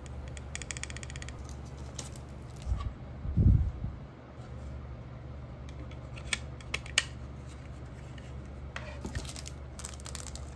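Small clicks and taps of an M.2 SSD and a 2.5-inch SATA enclosure being handled and fitted together, with a low thump about three and a half seconds in and a cluster of clicks near the end, over a steady low background hum.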